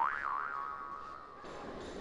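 Comic 'boing' sound effect: a pitched tone that swoops up and back down once, then holds a steady note and fades out about one and a half seconds in.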